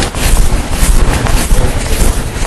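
Loud, uneven rustling and scraping noise in quick irregular strokes, heaviest in the low end.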